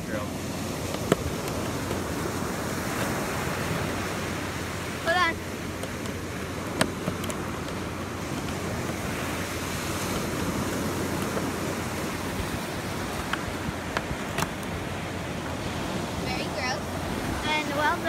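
Ocean surf washing onto a beach, a steady rushing noise, with a few sharp clicks scattered through it.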